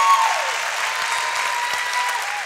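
Congregation applauding steadily in a large hall, in answer to a call to thank their pastors.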